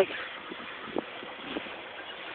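A motorized bicycle pedalled with its engine shut off but still chained up: a faint steady whirr from the drivetrain, with a few light ticks.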